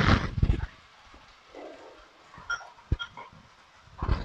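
Soft, already-cooked chickpeas tipped into a pot of frying sofrito: a brief burst of tumbling and wet plopping in the first second, then a few faint clinks.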